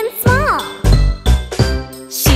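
Instrumental children's song music: a bright, wavering melody line over a steady bass beat.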